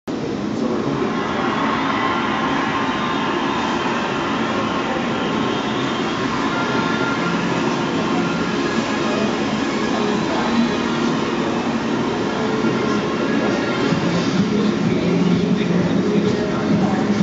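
Steady, loud hall ambience of a busy model railway exhibition: a dense din of visitors and running model trains, with faint music. It cuts in suddenly at the start.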